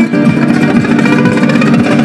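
Amplified nylon-string acoustic guitar played in a fast Spanish style, a dense run of plucked and strummed notes without a break.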